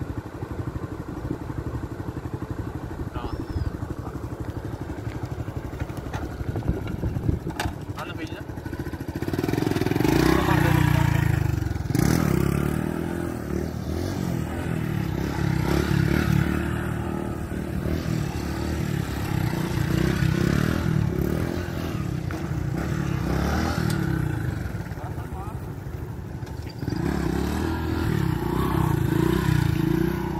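Small step-through motorcycle engine idling steadily, then revved hard about ten seconds in and ridden on its back wheel, the engine note rising and falling again and again as the throttle is worked to hold the wheelie.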